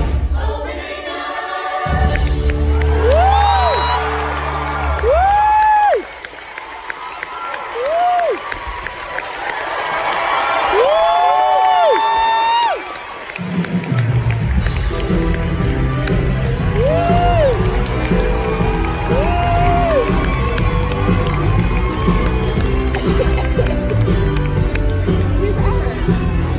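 Live theatre band playing during a curtain call, with the audience cheering and clapping and several long rising-and-falling whoops. The band's bass drops out for a stretch in the middle and comes back about 14 seconds in.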